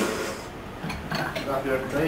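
A few light metallic clinks from the loaded barbell and its plates as the lifter lowers into a back squat, over faint voices in the gym.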